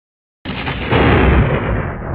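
Silence, then about half a second in a sudden loud explosion-like boom sound effect that rolls on as a rumble, its hissy top end sinking steadily lower.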